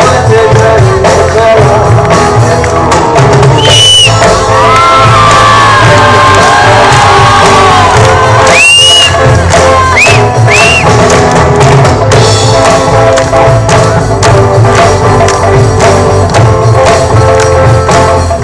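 A live band playing loudly through a PA system: electric and acoustic guitars, bass, drums and tabla with a lead vocal. A few short high whistles and cheers from the crowd cut through, about four seconds in and again around nine to eleven seconds.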